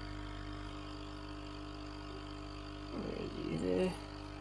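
Steady electrical hum of aquarium equipment, several steady tones with no rhythm. A short stretch of a man's voice, too brief to make out, comes in about three seconds in.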